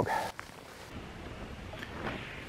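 Wind blowing, a steady rushing noise with no distinct events.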